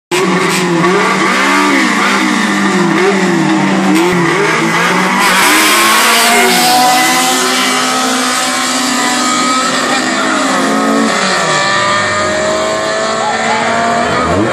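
Drag-race car engine revving repeatedly at the start line, then launching about five seconds in with a burst of tire noise and accelerating hard away down the strip, its pitch rising as it fades into the distance.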